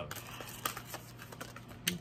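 Tarot cards being handled and dealt onto a table: a few light clicks and taps as cards come off the deck and are laid down, the sharpest near the end, over a low steady hum.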